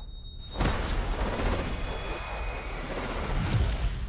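Cinematic sound effects under music: a sudden whooshing hit about half a second in, then a dense rumbling wash with a high ringing shimmer, and low booms near the end.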